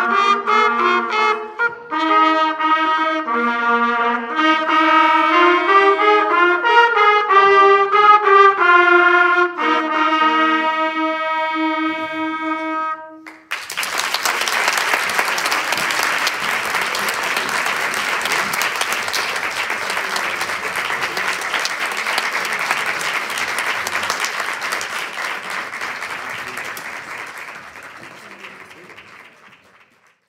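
A student trumpet ensemble plays a piece in several parts and ends on a long held chord about thirteen seconds in. Audience applause follows and fades out near the end.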